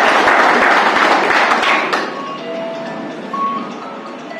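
A small group clapping by hand: loud applause for about two seconds that then dies away into quieter room noise, with a few faint short steady tones.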